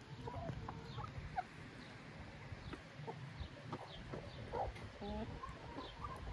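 Domestic hens clucking while they feed on scattered grain: many short, low, separate calls from several birds, with a few small high peeps.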